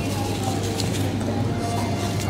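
A steady low hum of background room noise, with a few faint thin tones above it.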